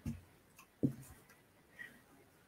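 Quiet room tone broken by two brief soft sounds from the woman at the microphone, one at the start and one just under a second in.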